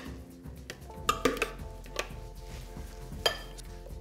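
A few light knocks and scrapes as a food-processor mixture is scraped out of its plastic bowl into a ceramic bowl of minced meat, over soft background music.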